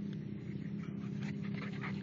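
A husky panting quickly close by, the breaths coming about five a second and growing louder near the end, over a steady low hum.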